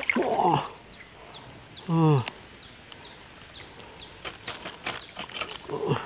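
Short, high chirps, each falling in pitch, repeated evenly about three times a second over a quiet background, from a small animal such as a bird or insect. A man grunts once, about two seconds in.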